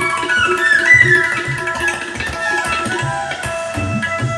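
Tabla and bansuri playing Indian classical music: a bansuri note slides up and bends back down about a second in, over a steady run of tabla strokes with deep bass-drum thumps.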